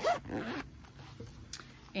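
A zipper being drawn open around a canvas-covered interchangeable knitting needle case, a soft scratchy run of zip teeth. A short vocal sound comes first and is the loudest thing.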